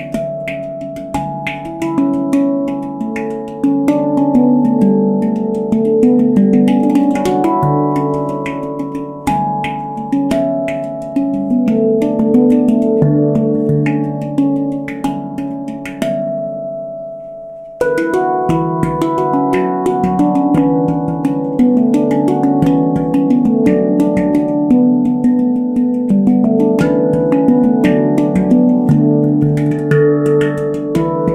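Avalon Instruments handpan in the D Ashakiran scale, played with the hands: a steady run of struck, ringing steel notes. About sixteen seconds in the playing stops and the notes ring out, then it starts again suddenly about two seconds later.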